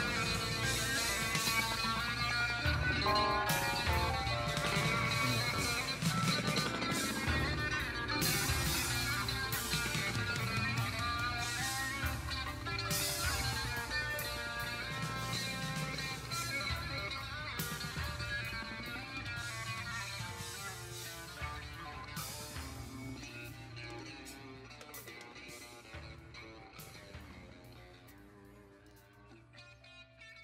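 Instrumental rock passage led by guitar, played from a recording, fading out over the last ten seconds or so.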